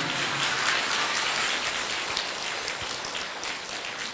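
Audience applauding, a steady patter of many hands that fades gradually toward the end.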